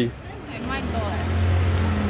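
A motor vehicle's engine running close by: a low, steady hum that builds about half a second in and then holds, with faint voices over it.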